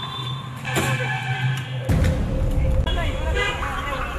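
Men's voices calling out, over a steady low rumble that starts about two seconds in.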